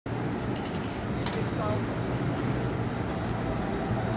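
Steady low hum of Alstom Citadis 402 trams in a city street, with faint voices of passers-by.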